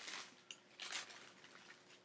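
Faint handling noise from a stuffed toy and its packaging being turned over in the hands, with a couple of soft rustles or clicks about half a second and a second in.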